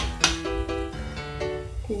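Background music of held keyboard-like notes moving from one pitch to the next, with two sharp clicks near the start.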